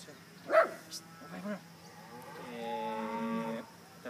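A cow mooing once: one steady, held call of just over a second, beginning a little after the middle.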